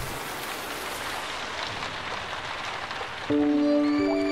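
Steady downpour of rain as a cartoon sound effect, an even hiss of water. About three seconds in, music enters with held, sustained notes over it.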